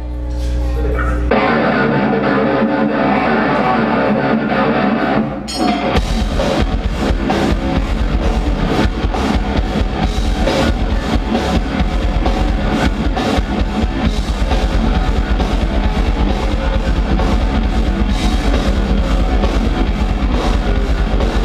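Live metalcore band playing: a thinner guitar intro for the first five seconds or so, then the full band with distorted electric guitars, bass and drum kit crashes in about six seconds in, with fast, steady drumming.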